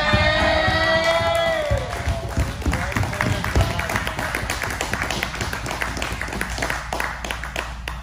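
A drawn-out cheer from a man, falling in pitch, followed by a group of people applauding for several seconds.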